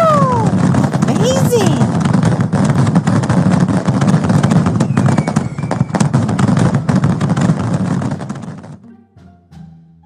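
Fireworks going off: a dense, continuous crackling and popping, like a barrage of small bangs, that dies away about nine seconds in.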